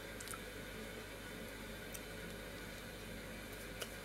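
Quiet room hiss with a few faint soft clicks from closed-mouth chewing of a Twinkie sponge cake.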